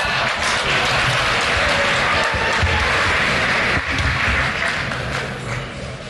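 Audience applauding, with music playing underneath; the applause thins out near the end.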